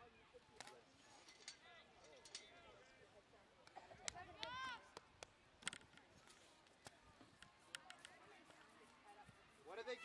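Faint, distant shouts and calls from players and spectators on an open soccer field, one call standing out about halfway through, with a few sharp knocks scattered between.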